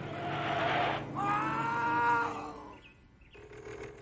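A heavy truck running with a rushing noise, then about a second in a truck air horn sounds one long blast, a chord of several steady tones held for about a second. The sound then drops away almost to quiet.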